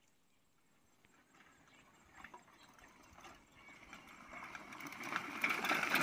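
A child's bicycle rattling and clicking as it rides up close on a dirt track, growing louder from about two seconds in.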